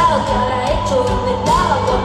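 Live band music with a woman singing into a microphone, her voice gliding and bending in pitch over a steady beat.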